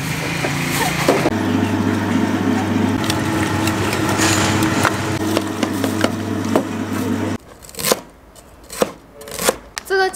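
Electric meat grinder running with a steady hum while it minces meat, stopping abruptly about seven seconds in. A few sharp knocks follow.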